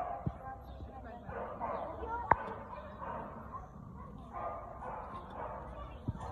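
Voices in the background, with a single sharp knock a little over two seconds in.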